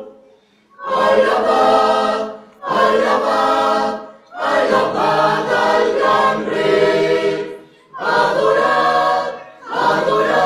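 Mixed church choir singing a hymn without instruments, in phrases separated by short pauses for breath.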